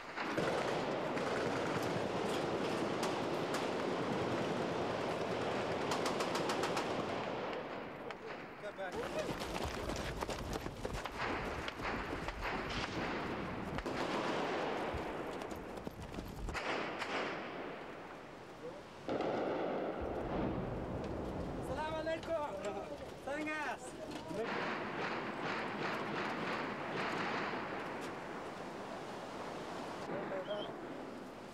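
Small-arms gunfire in an exchange of fire: bursts of automatic fire and scattered single shots, dense in the first half. Men shout about two-thirds of the way through.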